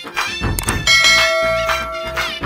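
Background music with a steady beat. About a second in, a bright bell-like chime joins it and rings on for about a second and a half, fading: the sound effect of a like-and-subscribe animation.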